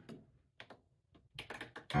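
A few light clicks of keys being pressed, faint, one about two-thirds of a second in and a quick cluster in the last half-second.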